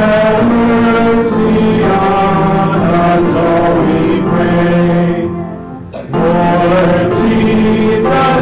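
Congregation singing a slow liturgical chant, held notes moving step by step. One phrase fades out about five seconds in and the next begins about a second later.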